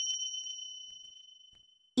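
A high, clear bell-like chime ringing out as a single pure tone and fading steadily until it dies away near the end.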